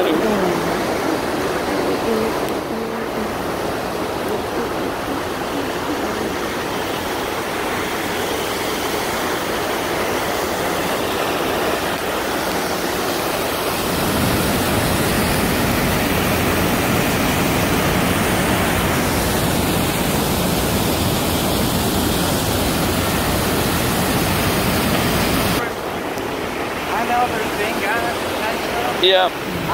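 Water rushing through the dam gate past a wrecked barge: a steady, noisy rush that gets louder about halfway through and drops off near the end.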